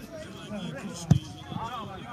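One sharp thud of a football being struck about a second in, amid players' shouts across the pitch.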